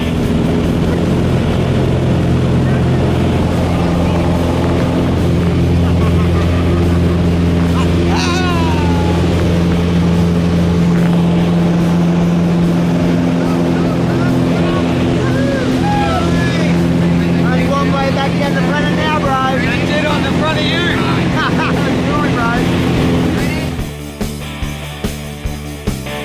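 Piston engine of a single-engine high-wing light aircraft running steadily at takeoff power through the takeoff roll and climb. A voice calls out over the engine about eight seconds in, and again repeatedly through the second half.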